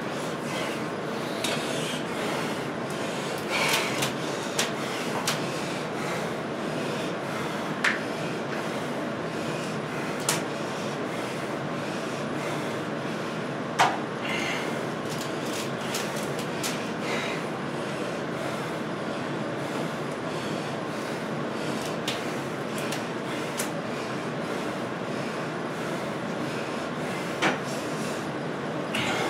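A man straining to bend a 3/4-inch steel bar by hand: a few short, sharp breaths and small knocks over a steady background hiss.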